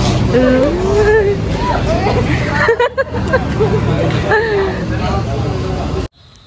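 Crowd chatter: many people talking at once over a steady low rumble, cutting off suddenly at the end.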